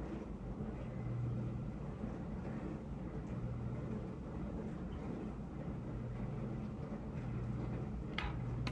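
Steady low hum over faint background noise, swelling and fading every second or two.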